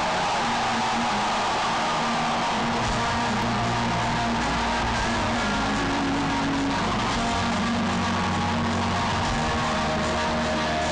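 Live hard-rock band playing through a loud PA, heard from the audience: sustained electric guitar notes, with heavier bass coming in about three seconds in.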